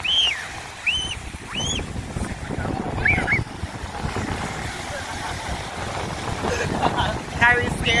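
Ocean waves breaking and washing up the beach, with wind buffeting the microphone in a steady low rumble. A few short, high, arched calls stand out over the surf near the start and again near the end.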